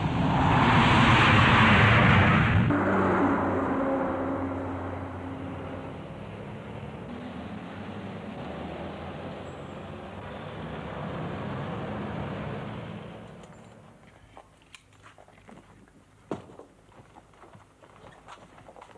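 Jet airliner engines at takeoff power, loudest in the first three seconds, then fading away over the next ten. A few light knocks near the end.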